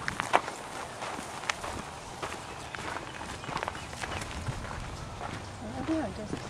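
Footsteps walking on a dry, sandy trail through grass: irregular, unevenly spaced steps.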